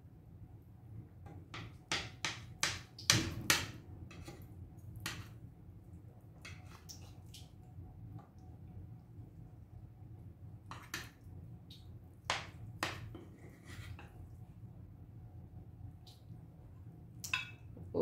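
A metal serving spoon clinking and scraping against a cast-iron skillet and a glass plate while bread pudding is dished up. The sharp clinks come in scattered clusters, the loudest a few seconds in and again past the middle.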